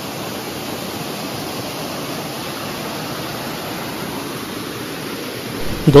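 Small waterfall cascading over rocks into a pool: a steady rush of water.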